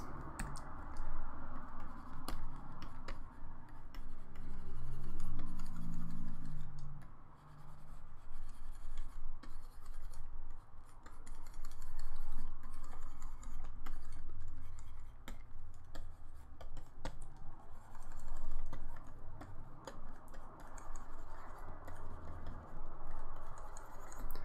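Pen stylus scratching across the surface of a Wacom Intuos graphics tablet in long painting strokes. Each stroke swells and fades over a few seconds, with light clicks in between.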